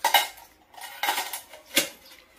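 Stainless steel bowls and utensils clanking and clinking against each other as they are handled and stacked. A sharp clank at the start, a few lighter clinks about a second in, and another loud clank near the end.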